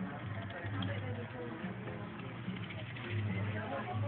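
Shop background: indistinct voices and faint music over a steady low hum.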